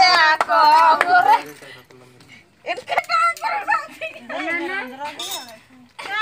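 People talking, with a high-pitched voice like a child's among them; the speech drops away briefly about two seconds in, then resumes, with a short click near the middle.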